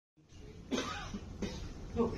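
A man coughing twice in quick succession, the first cough longer and louder, over a low room hum.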